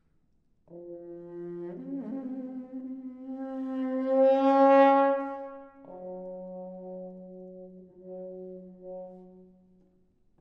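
Trombone played with a red rubber plunger mute over the bell: after a brief silence, a low held note steps up to a higher note that swells loud and bright in the middle, then drops to a lower held note that fades out near the end.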